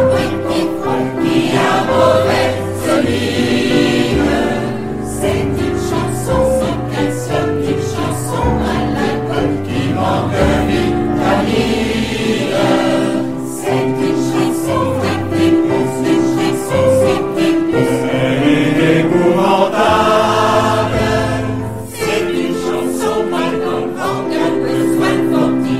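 A choir singing, holding chords that change every second or so.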